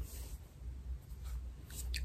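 Faint, soft rustling and scratching of fingers pulling apart a twist in thick, coily natural hair, in a few brief strokes.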